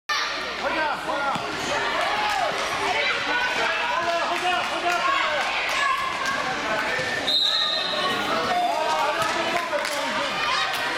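A basketball bouncing on a sports-hall floor amid children's shouting voices, with one short, steady whistle blast about seven seconds in.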